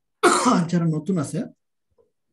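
A person clearing their throat loudly for just over a second, with a harsh start that turns into voiced sound.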